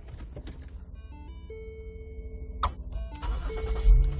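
A string of electronic chime tones stepping between pitches from the car's dashboard electronics, then a click and the Lincoln MKS's 3.7-litre V6 cranking and starting, the loudest moment coming right at the end.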